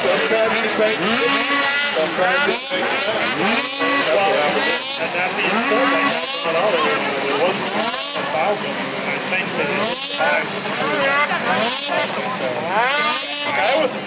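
Several 600-class race snowmobile engines revving up and down over and over as the sleds hit the bumps and jumps, each throttle blip a rising then falling whine about once a second, several sleds overlapping at different pitches.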